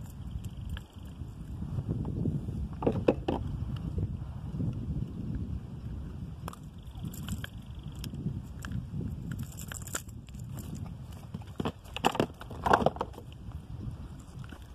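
Wind buffeting the microphone in a steady low rumble, with a few sharp clicks and knocks about three seconds in and again near the end.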